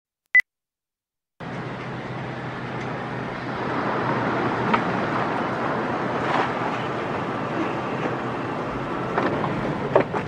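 A single brief high-pitched beep, then after about a second of silence a steady noisy outdoor ambience from an old film soundtrack, growing slightly louder, with no clear single source.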